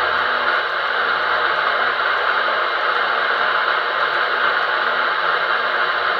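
Steady hiss from the speaker of a 2 m FM transceiver with its squelch open, tuned across empty channels with no station coming through.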